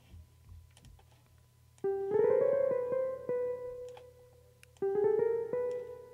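Sampled jazz guitar preset in Studio One's Presence instrument, auditioning notes as they are dragged in the piano roll. Twice, a note starts low and steps up in pitch to a held B that slowly dies away. Faint clicks fill the quiet first two seconds.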